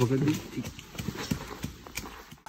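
Footsteps on a rocky forest trail: a handful of irregular scuffs and taps as hikers pick their way down over stone and leaf litter.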